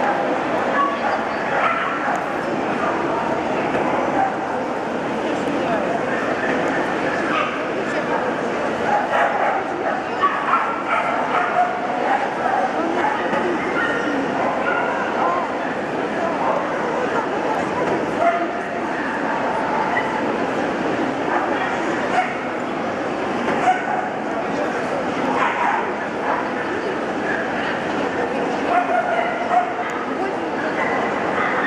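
Dogs yipping and barking repeatedly over a constant murmur of many voices in a crowded hall.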